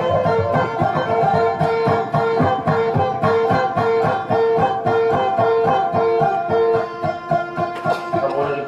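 Instrumental music on plucked strings: a quick melody of repeated notes over a steady, even picked rhythm.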